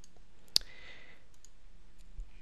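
A single sharp computer mouse click about half a second in, followed by a few faint ticks, over a faint steady room hum.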